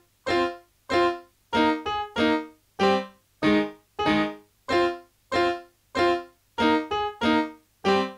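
Keyboard chords from a boom bap hip-hop instrumental, played alone without drums: short struck piano-like chords that die away quickly, repeating about every 0.6 s with a few quick doubled notes.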